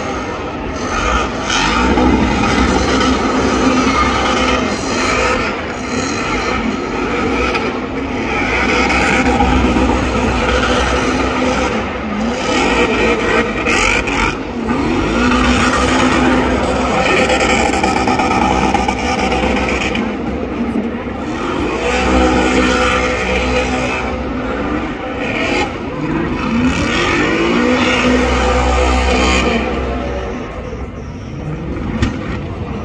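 A car doing a burnout: the engine is held at high revs and rises and falls over and over as the tires spin.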